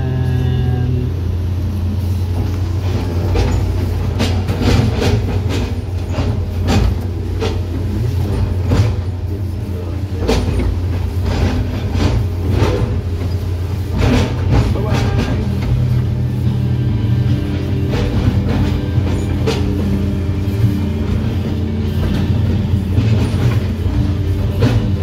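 Hitachi 210 excavator heard from inside its cab: the diesel engine runs with a steady low drone while the bucket chops felled oil palm trunks, giving many short, sharp knocks. Music plays over it.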